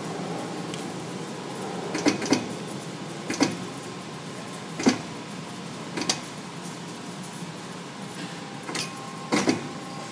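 Eaton ET5050 hydraulic hose crimper running through a crimp cycle: a steady machine noise, with a series of sharp metallic clicks and knocks at irregular intervals as the hose fitting is set in the dies, crimped and taken out.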